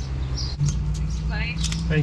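Mitsubishi Lancer 1.6 petrol engine idling with a steady low hum while the car stands still, heard from inside the cabin. A brief spoken phrase comes near the end.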